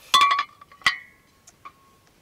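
Antique cast iron waffle iron pieces clinking against each other: a quick cluster of knocks at the start, one sharper knock about a second in and a light tap near the end, each leaving a short metallic ring.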